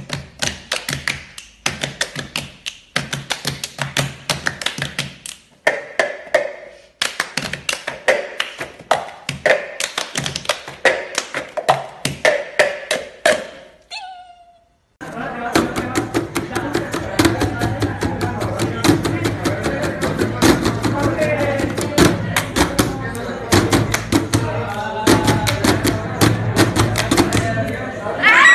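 Rapid, rhythmic hand taps and slaps on a wooden floor and a tabletop, many strikes a second, over a song. About halfway through, the audio cuts after a short gap to a louder song with singing, still with quick tapping over it.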